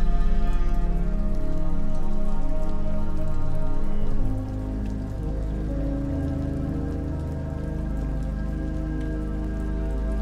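Slow ambient music of long held chords over a deep bass drone, with rain falling on water mixed in as a light patter. About four seconds in the chord shifts and the music gets a little quieter.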